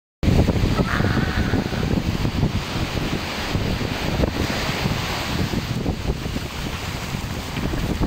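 Wind buffeting the phone's microphone in gusts over the steady wash of surf breaking and running up the shore.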